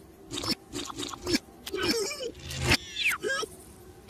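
A cartoon lizard character's wordless vocal sounds: short grunts and exclamations that rise and fall in pitch. They come among quick clicks and knocks from the sound effects, with a high falling squeak about three seconds in.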